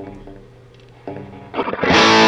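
Gibson Les Paul electric guitar through a Divided by 13 FTR 37 amp set to half power. A chord rings out, another follows about a second later, then a much louder strummed chord comes in near the end.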